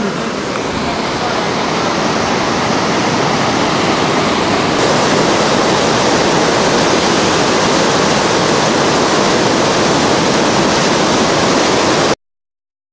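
Whitewater rapids rushing over a boulder ledge: a steady, loud rush of water that builds slightly over the first couple of seconds.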